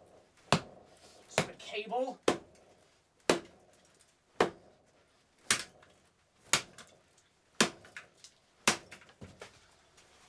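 Sledgehammer blows crushing a vintage metal data transfer switch box lying on carpet: a run of single sharp strikes, about one a second, nine in all.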